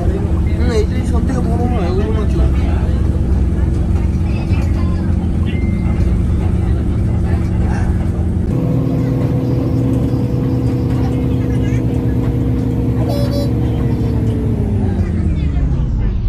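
Steady droning hum of parked jet airliners and ground equipment on an airport apron, changing in tone about halfway through. Near the end the hum slides down in pitch, like a recording being slowed to a stop.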